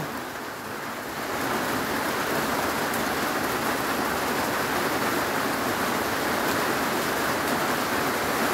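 Heavy typhoon rain downpour falling on a corrugated metal roof overhead, building up over the first second or two and then holding steady.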